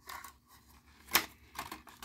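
Plastic blister pack on a Hot Wheels card, its blister cracked open, handled and turned over in the hands. There is one sharp click about a second in, then a few faint ticks.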